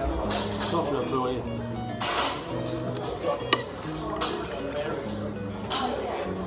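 A metal fork clinking and scraping on a plate while eating, with one sharp clink a little past halfway, over background music with held low notes.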